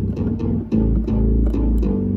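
Nord Stage 3 synth engine playing a synth bass preset: a short line of low bass notes, the pitch changing several times.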